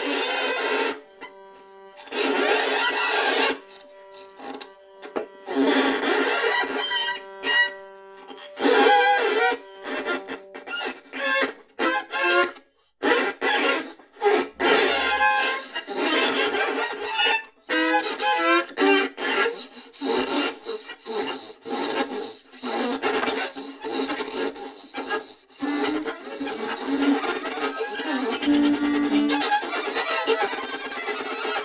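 Experimental improvised music. A held tone with its overtones runs for about the first eight seconds under loud noisy bursts. After that comes a choppy stream of short bursts that start and stop abruptly every second or less, with brief low pitched notes near the end.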